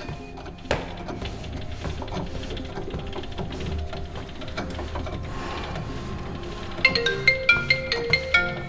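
Background music plays throughout. About seven seconds in, a smartphone starts ringing for an incoming call, with a ringtone of quick, high, repeated notes.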